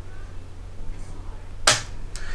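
Handling noise on a camera-mounted microphone as the camera is picked up: one sharp knock near the end, over a steady low hum.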